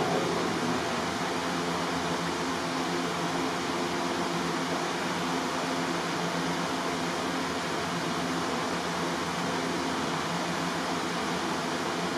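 Steady, even hiss of background noise with a faint low hum underneath, no speech.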